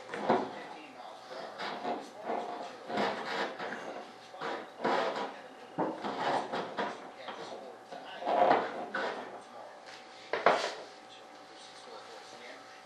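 Irregular scraping, rubbing and knocking of the stab post tube being worked back and forth in its hole in the fiberglass fuselage during a test fit, with a couple of sharper knocks, one about halfway through and a louder one near the end.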